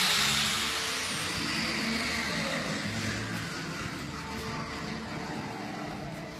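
Steady background machine noise in a workshop, slowly growing quieter.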